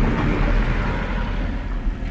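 A rumbling wash of noise that fades slowly, a sound effect in a transition of a jungle DJ mix, with no beat or vocal over it.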